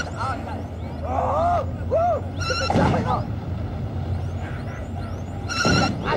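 Electronic laser-gun zaps, falling in pitch, and two short bursts of a beeping tone over a steady low hum, with excited voices rising and falling between them.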